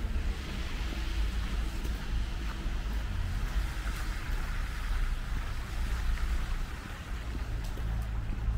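City street traffic on a wet road: steady tyre hiss from passing cars over a continuous low rumble.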